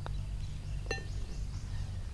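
Putter striking a golf ball once, a sharp, briefly ringing click about a second in, with a fainter tick just before it at the start.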